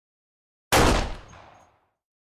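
A single dubbed-in gunshot sound effect: one sharp report about three-quarters of a second in, its tail dying away within about a second.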